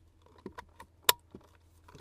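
A plastic wiring connector clicking into place, with one sharp snap about a second in among faint handling ticks: the plug is seated in its socket.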